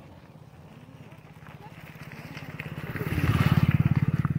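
A motorcycle engine running as the bike approaches and passes close by, its even firing growing steadily louder and loudest near the end.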